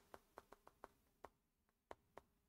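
Faint, irregular light ticks of a stylus tapping on a tablet screen during handwriting, about eight in two seconds, over near silence.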